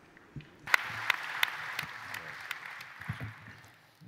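Applause from a large audience. It starts about a second in and dies away near the end.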